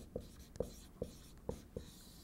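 Dry-erase marker writing on a whiteboard: about five short, separate strokes.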